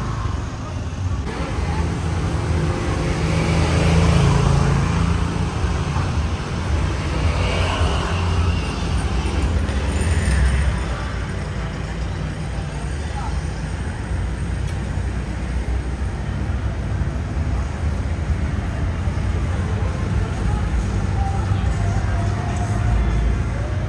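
Busy street ambience: a steady rumble of road traffic from passing cars and motorbikes, swelling louder twice in the first half, with indistinct voices of people nearby.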